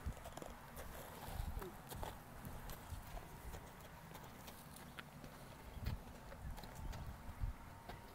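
A horse's hooves stepping slowly on dry, stony dirt: soft irregular thuds with scattered small clicks as it circles with its nose to the ground before lying down to roll.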